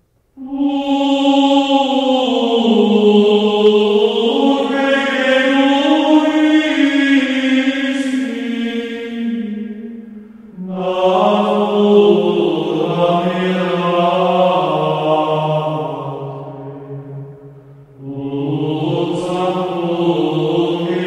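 Slow chant-style vocal music of long held notes gliding gently in pitch, in three phrases that each swell in and fade away. The second phrase starts about ten seconds in and the third near the end.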